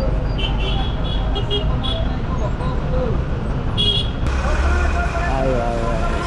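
Motorcycle riding through busy city traffic: a steady low engine and road rumble, with several short high-pitched beeps, likely horns, in the first couple of seconds and another about four seconds in. Voices come in near the end.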